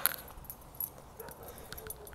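Faint, sparse metallic jingling and light clicks of small metal pieces, such as keys or leash and collar hardware, moving while walking; otherwise quiet.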